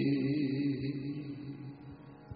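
A man's voice chanting a slow religious invocation, holding out the drawn-out last word "Singh" and fading away.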